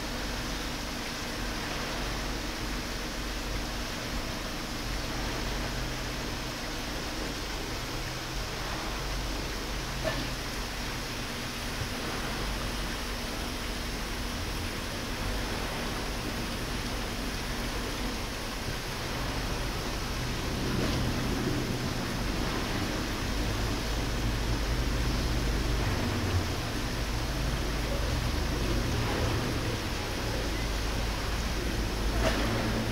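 Steady background noise: an even hiss with a low rumble that grows somewhat louder in the second half.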